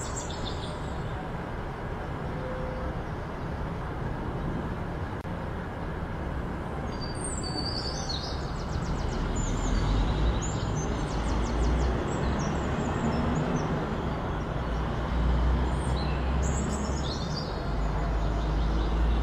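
Outdoor ambience: a steady rushing background noise with a low rumble that strengthens about halfway through. Birds chirp over it in short bursts, about seven seconds in and again near the end.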